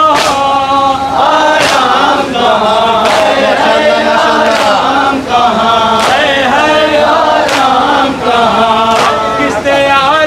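Group of men chanting a noha together, with sharp hand strikes on their chests (matam) landing in unison about every one and a half seconds.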